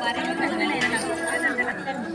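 Several women's voices chattering at once in a crowd, no single voice clear.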